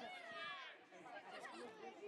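Several voices chattering and calling out indistinctly, with no clear words, fairly faint.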